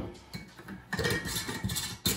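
A glass jar and kitchen utensils handled on a granite countertop: light clinks and scrapes starting about a second in, and a sharp knock at the very end.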